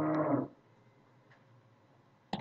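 A man's drawn-out hesitation sound held at one steady pitch, ending about half a second in, followed by near silence.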